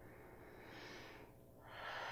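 A woman's faint breathing under exertion during a side-lying leg-lift exercise: one soft breath about half a second in, then a stronger breath starting near the end.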